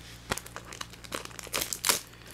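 Foil trading-card booster pack wrappers crinkling as they are handled: a run of short, crisp rustles, busiest and loudest in the second half.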